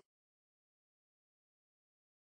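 Silence: a gap between words.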